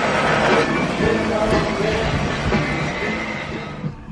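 Steady noise of a power sander working wooden hull planking, mixed with background music, fading out near the end.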